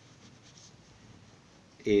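Faint scratching of a pen writing on paper held on a clipboard. A voice starts speaking near the end.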